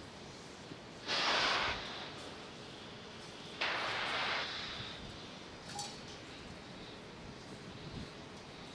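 Pressure venting from a fuelled Falcon 9 rocket and the plumbing of its transporter erector, heard as two sudden hisses. The first comes about a second in and lasts under a second; the second comes about three and a half seconds in and lasts about a second.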